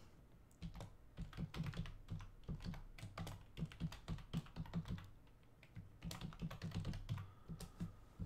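Typing on a computer keyboard: a quick run of light keystrokes, thinning out briefly midway, while a file is being saved.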